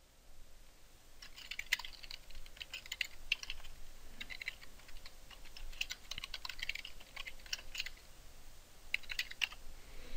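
Typing on a computer keyboard: faint, irregular runs of keystrokes, starting about a second in and stopping just before the end.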